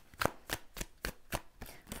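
A deck of tarot cards being shuffled by hand: an uneven run of short, crisp card slaps, about four a second.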